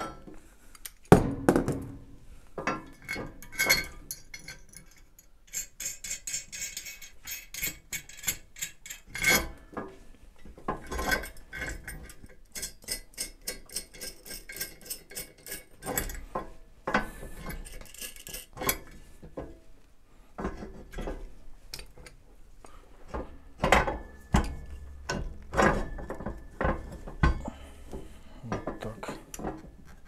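Steel parts of a hydraulic bottle-jack shop press clinking and knocking as it is assembled by hand, the jack being set in the frame and its nuts tightened. Scattered metallic knocks, with two runs of quick light ticking partway through.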